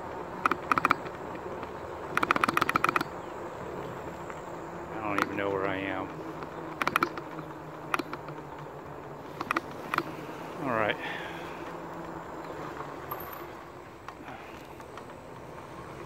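RadMini electric fat-tire bike ridden over cracked asphalt, heard from a handlebar-mounted phone: a steady buzzing hum with clusters of rattling clicks as bumps jolt the mount. Two short gliding tones come about five and eleven seconds in.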